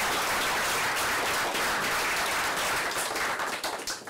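Small audience in a lecture room applauding, the clapping dying away near the end.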